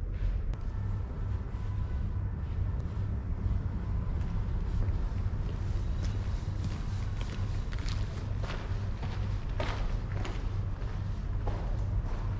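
Irregular footsteps on a gravel and rubble floor, clearest in the second half, over a steady low rumble.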